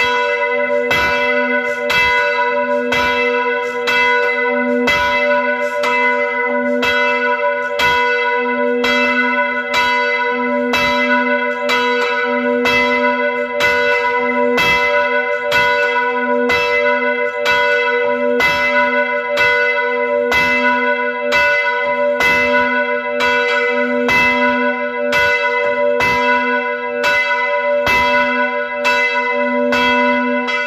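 A church bell swung by a bell rope and heard close up from inside the belfry, striking about once a second in a steady, even peal, its hum ringing on between strokes. It is the bell rung to call people to Mass.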